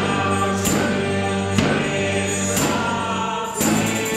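Live band music: sustained chords held under a sharp percussive hit about once a second.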